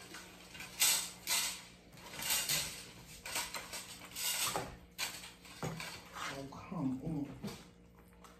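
Crisp fried chicken breading crackling in irregular bursts as a piece is torn apart by hand.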